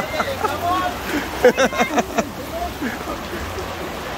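Voices of several nearby people talking in a crowded market aisle, over a steady background hiss.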